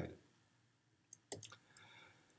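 Several short, quick computer clicks about a second in, advancing the lecture slide.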